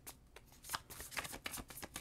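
A tarot deck being shuffled in the hands: a run of quick, irregular card flicks, sparse at first and then denser.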